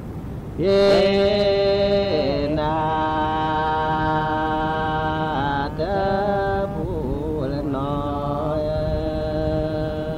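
A voice chanting in long held notes, sliding in pitch from one note to the next, with a louder new phrase starting about half a second in.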